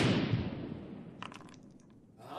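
Intro sound effect of stone crashing down: a heavy crunching impact that dies away over about a second and a half, with a few small clicks like falling rubble just past a second in.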